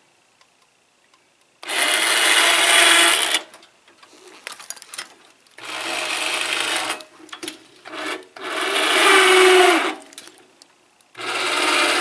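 Electric winch motors driving the legs of a homemade powered exoskeleton, running in four short bursts of about one and a half to two seconds each as the suit steps around.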